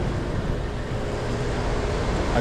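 Steady outdoor background noise: a low rumble and hiss with a faint hum.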